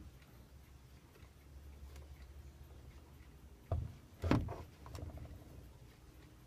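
Plastic case of a vintage talking alarm clock being handled: two sharp knocks about two-thirds of the way in, followed by a few small clicks and rattles.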